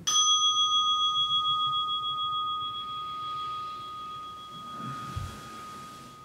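A meditation bell struck once, ringing on with a slow, wavering fade, marking the end of the meditation period. About five seconds in, cloth rustles and there is a soft thump as the meditator bows forward to the floor.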